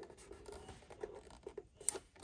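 Faint rubbing and scratching of fingertips over the plastic back panel of an AstroAI mini fridge, with a single sharp click near the end.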